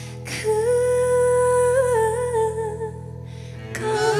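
A female singer holds one long wordless hummed note with a slight wobble over soft, steady backing music, then begins a new sung phrase near the end.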